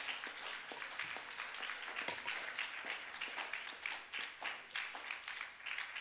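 Congregation applauding: many hands clapping at once, beginning to die away near the end.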